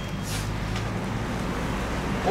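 Steady low background rumble and hum of a small shop's room noise, with one short hiss about a third of a second in.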